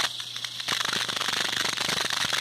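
Irregular crackling clicks over a steady hiss and a low steady hum, with no speech.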